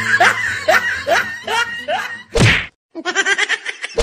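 Laughing cries followed by a loud whack sound effect a little over two seconds in. After a brief dropout, a thinner-sounding laughing clip runs, and another whack lands at the very end.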